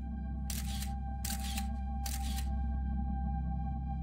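Camera shutter firing three times, about three-quarters of a second apart, over a low sustained music drone.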